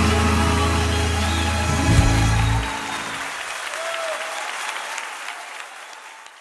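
A song's last chord rings out and stops about two and a half seconds in, followed by applause that fades out slowly.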